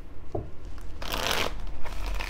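A deck of tarot cards shuffled by hand: a light tap about a third of a second in, then a dense rustling burst of shuffling cards about a second in, with shorter flicks near the end.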